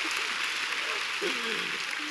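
A large audience applauding steadily, with a brief voice over it a little past the middle.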